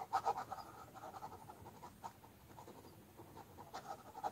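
Ballpoint pen scribbling on sketchbook paper in quick back-and-forth shading strokes. They are busiest in the first second, lighter through the middle and pick up again near the end.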